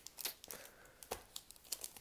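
Faint, scattered crinkling of hockey card pack wrappers being handled.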